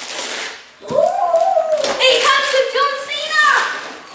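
A child's high-pitched, excited vocalising held for a couple of seconds, starting about a second in. Just before it, wrapping paper crackles and tears.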